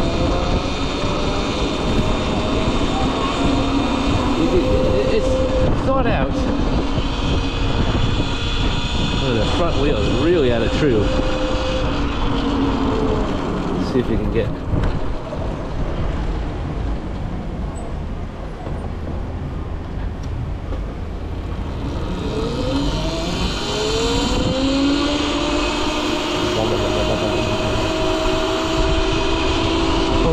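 Cake Kalk& electric motorcycle running along city streets: a pitched motor whine over wind and road rumble. The whine sags in the middle and then rises steadily about two-thirds of the way through as the bike speeds up.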